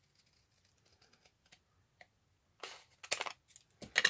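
Scissors cutting through file folder card: faint slicing at first, then a few louder, crisp snips in the last second and a half.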